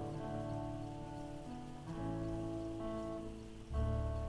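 Slow instrumental music from a small church band on keyboard, acoustic guitar and electronic drums: long held chords that change about every two seconds, with a deep bass note coming in near the end, over a faint steady hiss.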